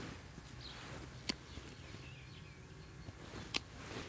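Two short, sharp snips of hand pruning shears cutting willow shoots, a little over two seconds apart, with faint bird calls in the background.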